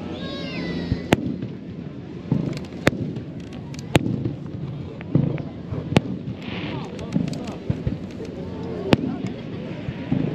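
Aerial fireworks shells bursting: a series of sharp single reports every one to three seconds, with crowd voices underneath.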